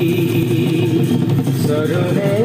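Assamese dihanam devotional music: one long held note that wavers slightly in pitch, over a steady low accompaniment.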